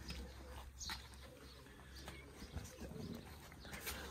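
Puppies stirring in a cardboard box as a hand handles them: faint shuffling and scratching against the cardboard, with a few soft knocks.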